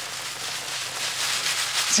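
Threshed dried peas, with their broken stalks and pods, being shaken in a wooden-rimmed hand sieve: a steady dry rustle that grows louder as the peas sift through the mesh.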